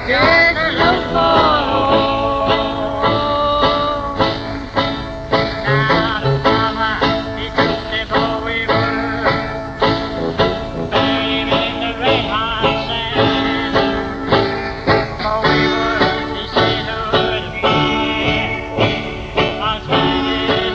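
1950s skiffle band music: strummed acoustic guitar and other string instruments playing over a quick, steady beat.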